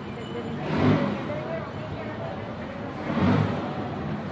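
Busy street sounds: road vehicles passing and people talking in the background, with two louder swells, about a second in and again past three seconds.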